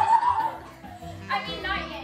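Music playing, with excited girls' voices rising over it near the start and again shortly before the end.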